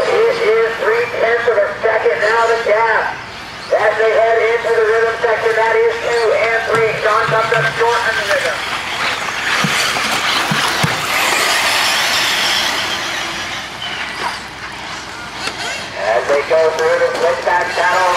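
Electric off-road RC buggies racing past close on a dirt track: a hiss of motors and tyres on loose dirt that swells in the middle and fades a few seconds later, with a few light knocks.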